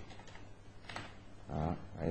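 Quiet room tone with a single faint keyboard click about halfway through, then a short hum from a man's voice near the end.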